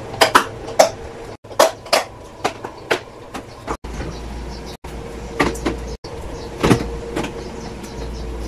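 Hard plastic food containers clacking and knocking as they are handled and set down, in a string of sharp separate clicks. A steady low hum sits underneath from about halfway through.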